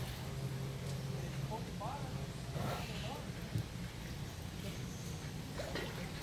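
Background voices of people, a few short rising-and-falling voice sounds, over a low steady hum that is strongest in the first second and a half; a single knock about three and a half seconds in.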